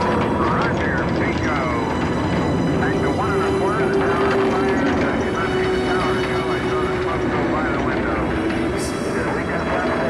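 Atlas rocket's engines firing at liftoff: a loud, steady noise with many overlapping voices, unclear as words, over it.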